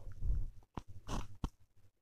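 A few short clicks and knocks of a steel spoon against steel cookware as the powder is emptied into the milk, the loudest just over a second in, then quieter.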